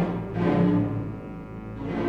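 Opera orchestra playing in a 1949 recording, a dense low passage that softens about a second in and swells again near the end.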